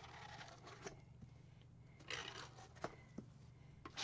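Faint scraping of a tool through wet acrylic paint on a canvas, in short strokes near the start and about two seconds in, with a few light clicks.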